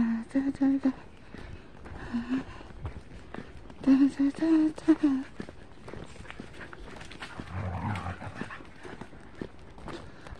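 Footsteps of a walker and two trotting dogs on a tarmac path, with a woman's voice saying a few words at the start and again about four seconds in.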